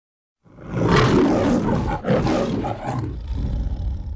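The MGM logo lion roaring, starting about half a second in: two long roars with a short break near the middle.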